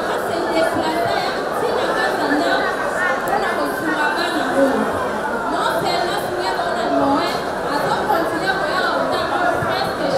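A woman speaking into a microphone in a large, echoing hall, with background chatter; speech only, no other distinct sound.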